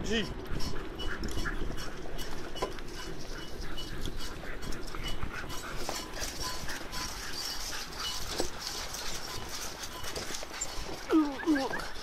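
A team of harnessed sled dogs running on a leaf-covered trail while pulling a wheeled cart: a steady patter of paws and rustle of leaves and wheels. A few short, high dog yelps come about a second before the end as the team runs alongside another team.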